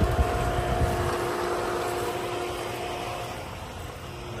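Pool pump motor running at the equipment pad with a steady mechanical hum over a low rumble, growing fainter toward the end. A couple of brief knocks come right at the start.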